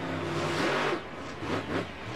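Monster truck engine revving hard as the truck drives over a dirt pile and up a ramp, loudest in the first second and then easing off.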